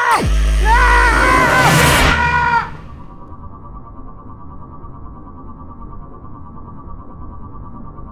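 A man screams over a deep rumble, and both cut off abruptly about two and a half seconds in. After that comes a quieter, steady electronic hum with a thin held tone.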